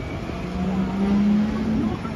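A road tourist train's tractor unit drives past with its engine running: a steady hum that rises slightly just before it ends, over street traffic noise.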